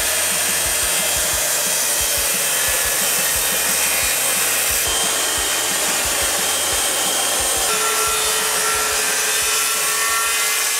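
Corded circular saw running steadily, its blade cutting lengthwise through a crumbly mushroom-mycelium and wood-chip blank, with a constant motor whine under the cutting noise.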